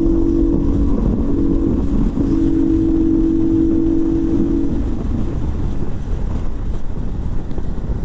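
Mondial RX3i Evo single-cylinder motorcycle engine running at a steady cruising speed, with heavy wind and road noise from riding at speed. The steady engine note holds for the first four and a half seconds, then drops away, leaving mostly wind and road rush.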